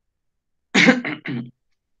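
A man coughing to clear his throat: one short burst in three quick parts, just under a second in.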